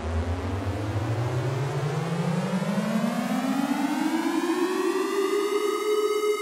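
Synthesized riser sound effect: a buzzy pitched tone sliding slowly upward for about five seconds, then holding steady near the end.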